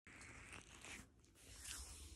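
Near silence with faint rustling and handling noise.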